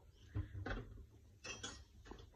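A few faint, short clicks and small knocks, about four in two seconds, over a low background rumble.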